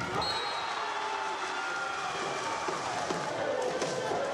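Volleyball rally on an indoor court: ball strikes and players' shoes on the wooden floor under continuous shouting and cheering from players and spectators.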